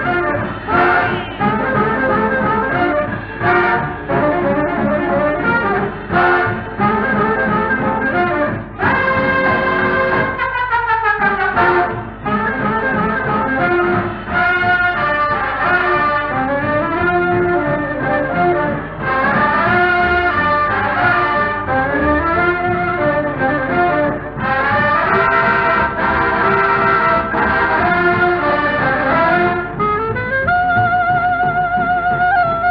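Instrumental break from a 1950s boogie-woogie dance-band record, the brass section carrying the tune over a steady beat, with a fast downward run about ten seconds in. The sound is dull and thin at the top, as on an old record.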